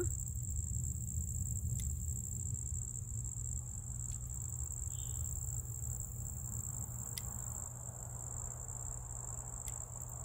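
Crickets trilling in a steady high-pitched drone, over a low steady rumble. A few faint clicks fall through it, from pruning shears snipping pepper stems.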